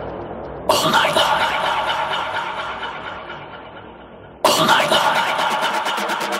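Techno track in a DJ mix, in a breakdown: a loud, noisy synth hit about a second in that fades over about four seconds as its high end closes off, then a second identical hit near the end. A fast drum roll starts at the very end.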